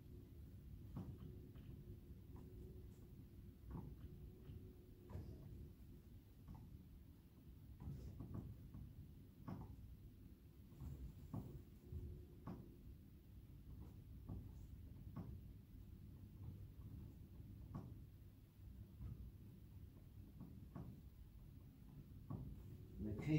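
Faint rustles and soft knocks from a man doing sit-ups on an exercise mat, about one every second, over a low background hum.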